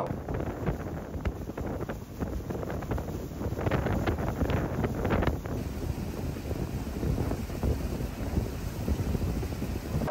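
Wind buffeting the microphone outdoors: a loud, rough, gusty rumble, with stronger gusts a few seconds in.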